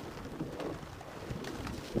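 A bicycle being ridden along a gravel towpath: wind buffeting the microphone and tyres rolling over gravel, with scattered light clicks and rattles.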